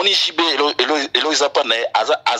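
Only speech: a man talking continuously.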